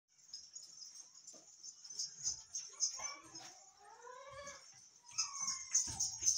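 A goat giving wavering bleats in the middle, with a shorter falling call near the end, over steady high-pitched chirping in the background.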